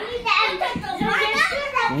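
A young child's high voice chattering and calling out in play, in short bursts.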